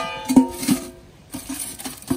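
Stainless steel stock pot clanking as it is handled: a sharp metal knock at the start and another about a third of a second later, each leaving a ringing tone that fades within about half a second, followed by a few lighter knocks.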